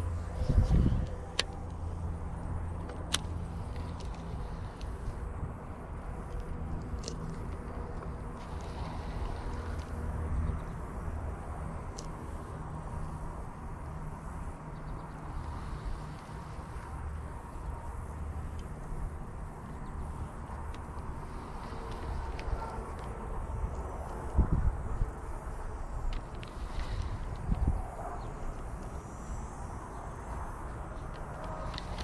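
Steady low outdoor rumble with a faint hum, strongest in the first several seconds, and a few scattered sharp clicks.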